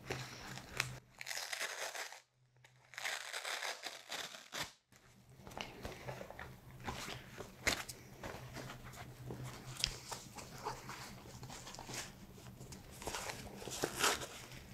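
Fabric blood pressure cuff being handled and unrolled, giving soft rustling, crinkling and small clicks, broken by two short silences early on, then wrapped around an upper arm near the end.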